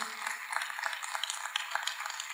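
Audience applauding lightly in a theatre hall: a haze of many scattered hand claps.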